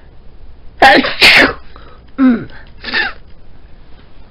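A woman sneezing into her elbow: two loud sneezes in quick succession about a second in, followed by two shorter, softer voiced sounds.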